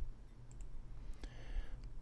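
A few faint clicks from a computer mouse, about half a second in and again a little after one second, over a low steady hum.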